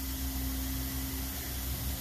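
Steady hiss with a low hum and one constant tone through it: carpet-cleaning extraction equipment running.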